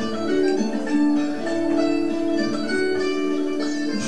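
Recorded French folk branle music played on psaltery: the tune's instrumental intro, sustained ringing string notes over a steady low note.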